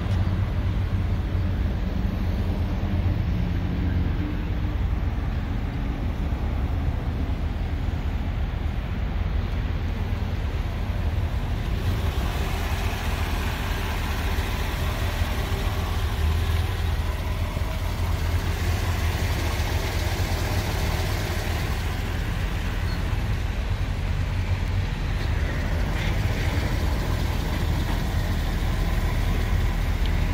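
A car engine idling with a steady low rumble. About twelve seconds in, a hiss joins it and carries on.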